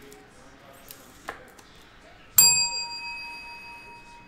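A single bell-like ding about two and a half seconds in, ringing out with a clear tone and slowly dying away. A faint click comes about a second before it.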